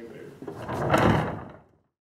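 Pair of tall wooden double doors being drawn shut. A swelling rush of noise peaks about a second in, then dies away.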